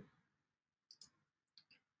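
Near silence with a few faint computer-mouse clicks: a pair about a second in and another pair near the end.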